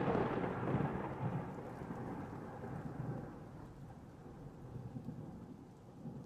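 Rolling thunder rumble that swells once just under a second in and then fades away steadily over several seconds.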